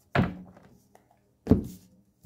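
Two thunks on a wooden tabletop a little over a second apart, as tarot cards are put down on the table by hand.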